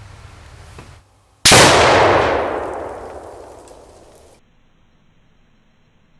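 A single sudden loud bang about a second and a half in, ringing on and fading away over about three seconds.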